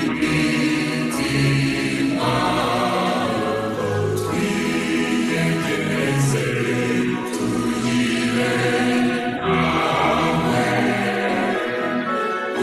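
A choir singing a hymn, slow sustained notes moving from one to the next without a break.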